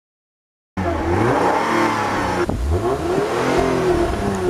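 Car engine revved through a large-bore exhaust, the pitch rising and falling in repeated revs with a brief dip about two and a half seconds in. It starts suddenly a moment in.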